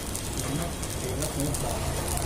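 Steady sizzle of burger buns frying on a large flat griddle, with faint voices in the background.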